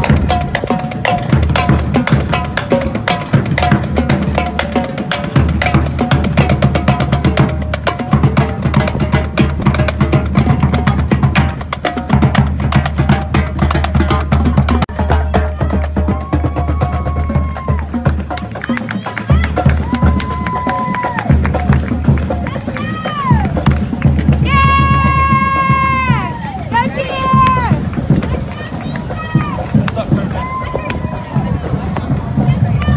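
Marching drumline of snare, tenor and bass drums playing a cadence as it walks. From about halfway on, voices call and whoop over the drumming.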